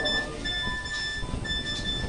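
An electronic beep on one steady high pitch, repeating about once a second with short gaps between beeps.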